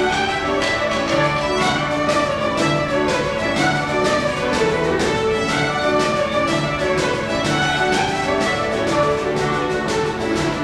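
A ceili band of many fiddles with drum kit and piano playing an Irish jig in unison, the fiddles carrying the tune over a steady beat on the drums and a piano accompaniment.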